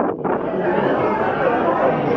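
Many people talking at once in a large room: a steady babble of overlapping voices with no single voice standing out.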